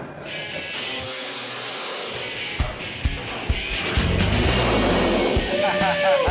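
Background music over a few sharp knocks, then a low, drawn-out rumble about four seconds in, as a cut-out corrugated steel wall panel of a shipping container is pushed out and falls onto the wooden deck framing.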